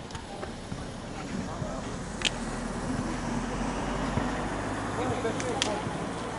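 A football being struck during futnet play on a hard outdoor court: one sharp thud about two seconds in and two more close together near the end. Under them run a steady low rumble and faint distant voices.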